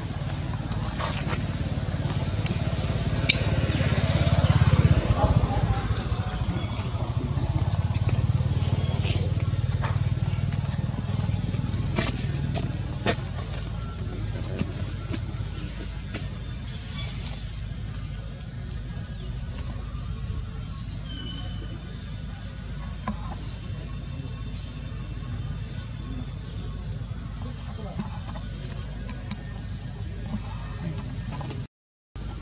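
Outdoor background of faint voices and a low rumble that swells about five seconds in and fades away, under a steady high-pitched hum with occasional sharp clicks.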